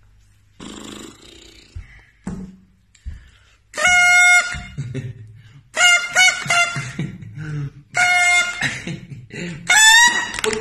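A small mouth-blown toy horn tooted in loud blasts: a steady held note about four seconds in, a quick run of short toots around six seconds, another note near eight seconds, and a final note that rises in pitch at the end.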